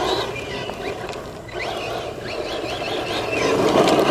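Losi Lasernut RC rock racer sliding on a loose dirt track: the electric drivetrain whines over the hiss of the tyres scrabbling through dirt. The sound eases about a second in and builds again near the end.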